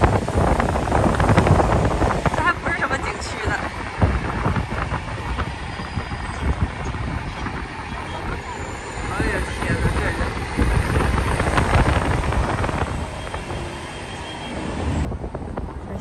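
Road and traffic noise from a moving car in city traffic: a steady rumble of tyres and engines, rising and falling as other vehicles pass. The sound changes abruptly near the end.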